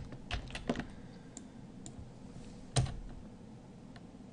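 Computer keyboard and mouse clicks: a handful of separate, unhurried clicks, the loudest just before three seconds in.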